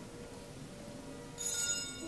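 A quiet church hall, then about a second and a half in a small cluster of altar bells rings once, sharply, in high bright tones that fade within half a second.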